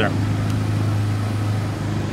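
Idling truck engine, a steady low hum.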